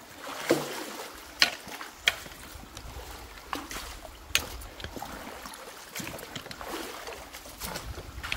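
Water splashing and sloshing as a long-handled rake is dragged through mud and sticks in shallow water, with irregular sharp clicks and knocks from the tines and wood, over steadily flowing water.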